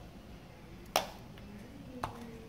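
A single sharp tap about a second in, against faint room tone: a utensil knocking during potting work with a metal spoon and a bowl of dry substrate.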